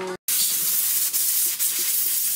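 Hose-fed spray gun with a canister hissing steadily as it blasts cleaning mist over a camshaft. It starts abruptly about a quarter second in.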